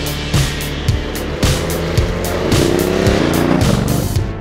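Aprilia Caponord 1200's 90° V-twin engine accelerating, its pitch rising through the second half, mixed with backing music that has a steady beat.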